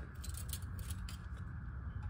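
Oil dipstick of a 2003 Nissan Altima 3.5 being slid back down into its metal tube: a few faint metallic scrapes and light ticks.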